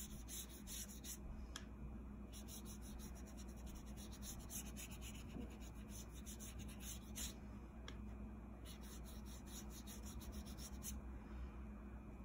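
Watercolor brush stroking wet blue paint across paper, faint, in runs of short strokes with brief pauses between them.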